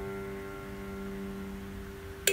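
A held piano chord ringing and slowly fading away, several notes sounding together with no new notes struck.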